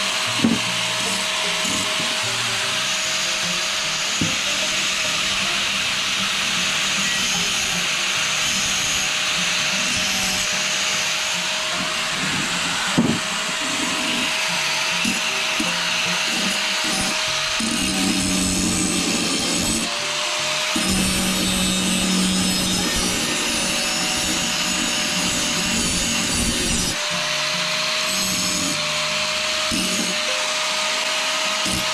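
Handheld angle grinder running steadily with a constant motor whine, its disc grinding the cut end of a galvanized steel angle, the grinding noise changing as the disc is pressed on and eased off. Two sharp knocks, one just after the start and one about halfway through.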